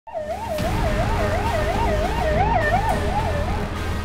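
Ambulance siren wailing in a fast rising-and-falling warble, about two and a half sweeps a second, fading out near the end over a low rumble of street traffic.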